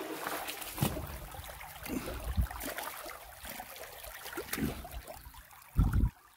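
A shallow creek trickling softly over rocks, with a few low thuds, the loudest one near the end.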